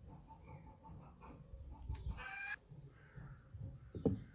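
Soft taps and scrapes of a metal spoon moving cooked rice, with a hen clucking in the background and one louder call about two seconds in.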